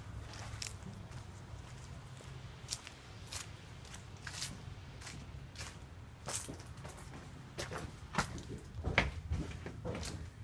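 Footsteps of a person walking, a sharp step sound every second or so, over a low steady hum.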